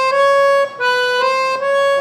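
Piano accordion played with the right hand: a slow melody of held single notes stepping upward, with a short break between two phrases.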